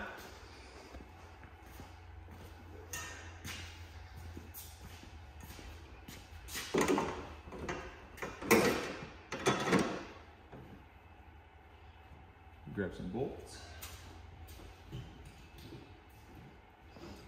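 A few scrapes and knocks as a snowmobile's rear bumper is slid onto the end of the tunnel and fitted by hand, with the loudest clunks about halfway through.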